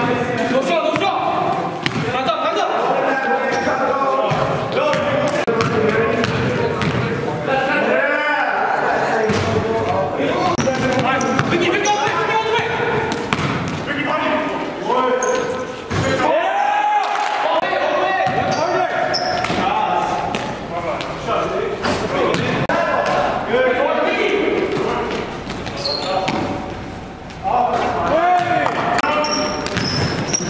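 Basketball game sound in a gymnasium: a basketball bouncing on the hardwood floor amid players' indistinct shouts and talk, with the echo of a large hall and a few short high squeaks near the end.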